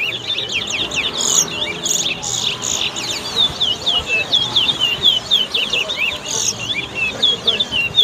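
Caged towa-towa seed finches singing a fast, unbroken run of high, quickly repeated whistled notes.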